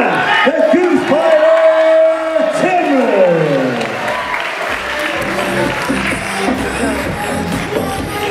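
A ring announcer's long drawn-out call over the PA, held on one pitch and then falling away about three seconds in. It gives way to music with a steady beat and crowd cheering.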